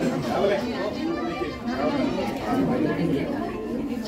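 Several people talking at once, overlapping conversation in a crowded room.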